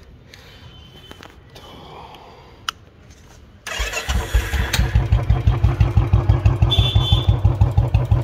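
Royal Enfield Classic 350's single-cylinder engine starting about four seconds in and settling straight into an even, thumping idle through a newly fitted free-flow aftermarket silencer.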